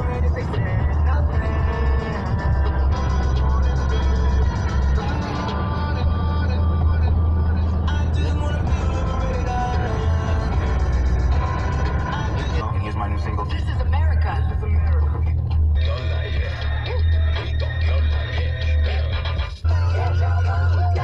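Music with a singing voice over the low, steady rumble of a car driving.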